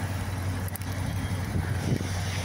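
Dodge Charger R/T's 5.7-litre HEMI V8 idling steadily.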